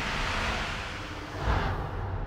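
Film-trailer sound effects: a loud rushing roar over a deep rumble, swelling again about one and a half seconds in.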